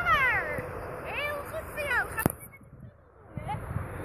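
Several high-pitched calls, each sliding down in pitch, in the first two seconds, then a sharp click and a brief hush.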